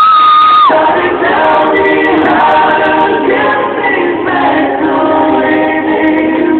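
A vocal group singing live in several-part harmony, heard from the audience through a phone's narrow, muffled recording. It opens with a loud, high held note that breaks off before the first second is out, then the voices carry on together with gliding, held notes.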